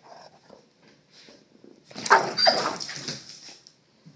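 A dog's sudden loud snarling outburst about two seconds in, lasting over a second, after faint shuffling: an older dog telling off a pestering young Doberman that she has had enough.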